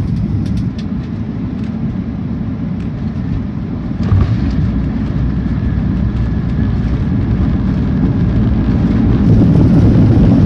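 Cabin noise of a Boeing 737-800 with CFM56-7B engines landing, heard from a seat over the wing: a steady low roar of engines and airflow. About four seconds in there is a sudden bump and jump in loudness as the wheels touch down, and the roar swells louder again near the end.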